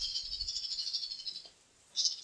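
A soft, high rattling hiss, like a shaker, that fades out about a second and a half in, followed by a brief second rattle near the end.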